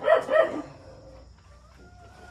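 A dog giving two short barks in quick succession right at the start, followed by only faint, drawn-out tones.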